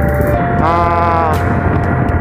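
Steady low rumble of a motorcycle running on the road, with wind on the microphone, under a drawn-out pitched vowel sound from about half a second to a second and a half in.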